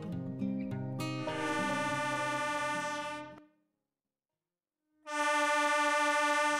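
Acoustic guitar music ends about a second in, then a diesel locomotive's air horn sounds a long, many-toned blast that cuts off abruptly into silence. A second horn blast begins about five seconds in.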